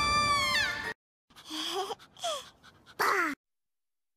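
A held high-pitched tone that slides down and cuts off about a second in. After a short silence come a few brief high cries that slide in pitch, the last one falling sharply.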